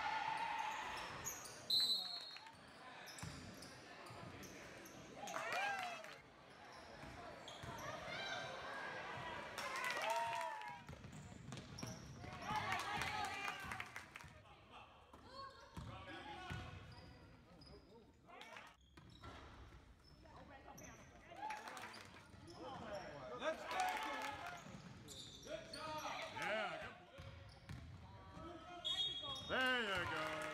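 Sounds of a basketball game in a gym: a ball bouncing on the hardwood floor, with scattered shouts from players and spectators.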